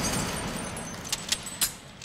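Fading tail of an explosion, with small pieces of broken glass and debris clinking down: three sharp clinks about a second in, then the sound dies away.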